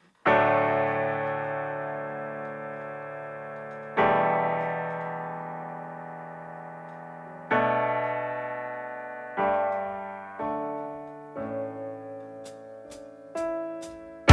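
Digital stage keyboard with a piano sound playing the intro chords solo: three long chords, each left to ring and fade for several seconds, then shorter chords coming faster. Four sharp clicks come near the end.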